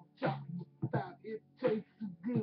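A man's voice in three short vocal bursts, about two-thirds of a second apart, over a steady low hum.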